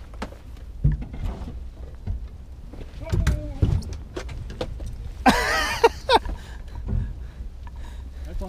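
Knocks and handling sounds of fishing gear on a boat deck over a steady low rumble of wind on the microphone. A short, loud cry-like sound comes about five seconds in.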